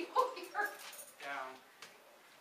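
A dog giving several short whimpering yips, with people's voices around it.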